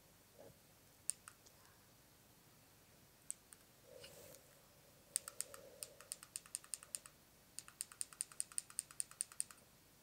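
Faint, sharp clicks: a few scattered ones at first, then about halfway in two quick runs of roughly seven clicks a second, the second run the steadier and louder.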